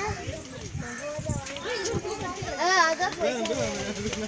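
Children's voices calling and chattering, with one loud high-pitched call a little under three seconds in.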